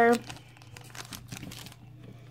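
Clear cellophane bag crinkling faintly in the hands as it is handled, a scatter of small irregular crackles.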